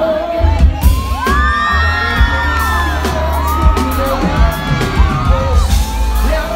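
Live band music with a heavy, steady bass, and from about a second in a crowd cheering and whooping over it, many voices rising and falling at once.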